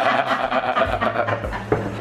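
Two women laughing, breathy and tailing off.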